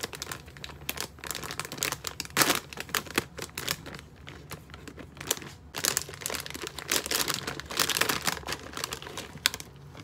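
Foil-lined plastic bag of Calbee Frugra granola crinkling loudly as it is handled and opened, in irregular bursts of crackle. The loudest bursts come about two and a half seconds in and again from about six to eight and a half seconds in.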